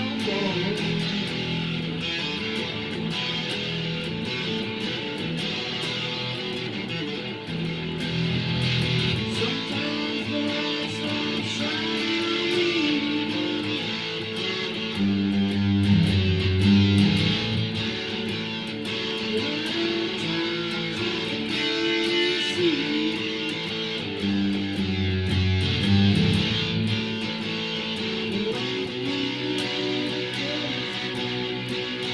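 Guitar-led music: strummed and picked electric guitar over a bass line, with bending notes and a fuller, louder stretch a little past the middle.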